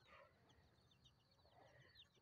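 Near silence, with faint, quick high chirps of small birds.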